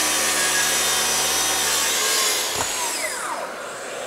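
Festool TSC 55 cordless plunge track saw cutting through a plywood board along its guide rail, with a dust extractor running on the hose. About two seconds in the saw is released and the blade spins down, its whine falling in pitch as it fades.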